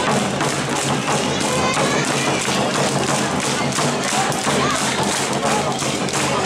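Awa Odori parade music: drums beating a fast, even rhythm of about three to four beats a second, with shouted calls from the dancers over it.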